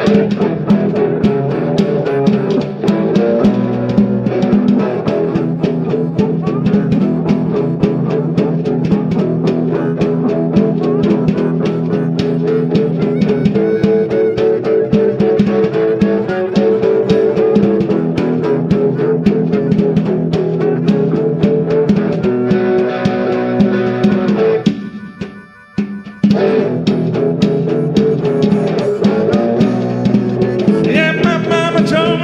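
Live blues instrumental break: guitar with a snare drum played with brushes, in a steady shuffle. The band drops out briefly about 25 seconds in, then comes back in.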